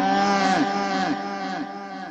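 A long, drawn-out vocal sound held for about three seconds, its pitch wavering, over a steady low hum; it weakens near the end.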